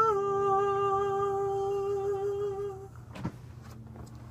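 A man's voice holding a long final sung note: it drops a step in pitch right at the start, holds steady and stops just under three seconds in. A couple of soft knocks follow as the recording phone is handled.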